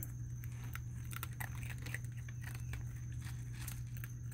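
Raccoons crunching and chewing food close to the microphone: an irregular run of small, crisp crunches over a steady low hum.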